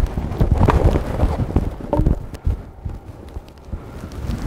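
A cricket bat whacking a crucible of molten steel out of a man's hands. The hit lands at the start and is followed by a rapid, irregular run of knocks and thuds for about two seconds, which then dies down.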